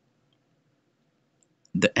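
Near silence with faint room tone, then a man's voice starts speaking near the end.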